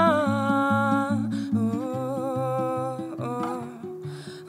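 Woman's wordless humming over fingerpicked acoustic guitar. A held vocal note slides down and fades about a second in, another follows, and the guitar keeps up an even pattern of plucked low notes.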